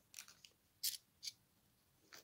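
£2 coins clinking against each other as they are handled and sorted: three short metallic clicks, the one just under a second in the loudest.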